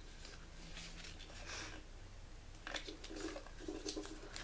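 Faint rustling and soft scrapes of a sheet of paper being folded in half and creased by hand on a wooden tabletop, with a few brief strokes.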